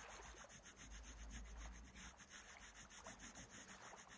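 Faint scratching of a coloured pencil shading on paper in quick, repeated strokes.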